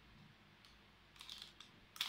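Near silence, with a few faint clicks and rustles past the halfway point as small items are handled while a receipt is searched for.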